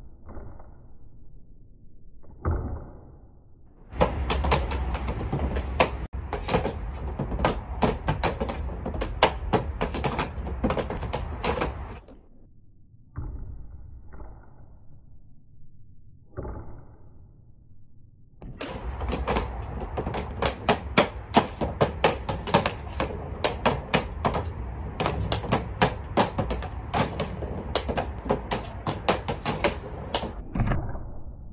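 Ball hockey stick blade rapidly tapping and dragging a ball on a practice mat during stickhandling: a fast clatter of clicks in two long runs, with a pause of a few scattered knocks between them.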